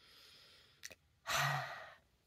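A woman breathing in faintly, a small mouth click, then a sigh out through the mouth, voiced briefly at its start and trailing off.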